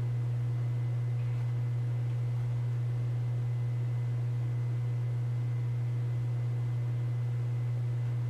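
A steady low-pitched hum, one constant tone with faint higher tones above it, unchanging throughout.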